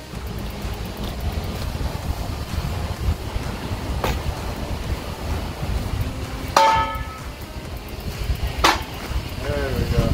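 Steel square tubing set down on a steel trailer frame: a light tap about four seconds in, a loud ringing metal clank about two-thirds through, and another clank near the end, over a steady wind rumble on the microphone.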